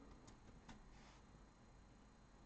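Near silence: room tone, with two faint clicks in the first second.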